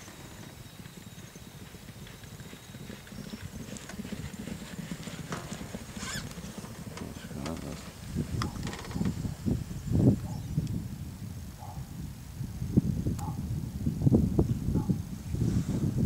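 Hoofbeats of two racehorses cantering on a soft all-weather gallop, with wind buffeting the microphone, which grows louder in the second half.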